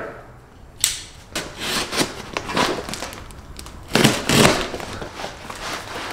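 A cardboard shipping box being opened by hand: cardboard and plastic packaging rustling and crinkling in irregular bursts. It starts suddenly about a second in, and the loudest crackles come around four seconds in.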